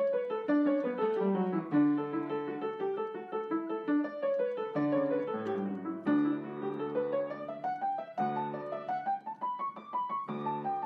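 Solo piano intro music playing flowing broken chords, with a long rising run of notes in the second half.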